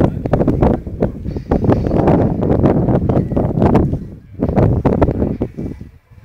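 Wind buffeting the microphone: a loud, gusting low rumble that rises and falls unevenly, dipping briefly about four seconds in.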